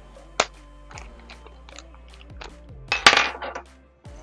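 Small kit parts clinking and rustling as they are handled in a small plastic parts bag: one sharp click a little before half a second in, then a louder burst of rattling and crinkling about three seconds in. Quiet background music plays underneath.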